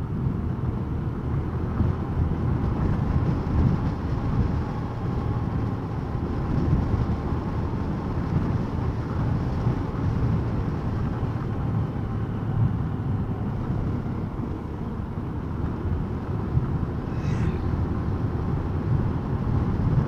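Motorcycle riding along steadily, its engine running evenly under a continuous rush of riding noise, with no sudden changes.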